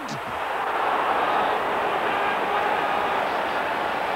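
Football stadium crowd: a steady, even noise from the stands with no single shout or event standing out.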